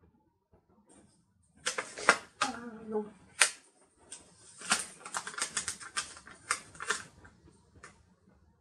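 Paper planner pages and sticker sheets being handled and pulled off their plastic binding discs: a run of sharp clicks and crackling rustles starting about a second and a half in and continuing to near the end.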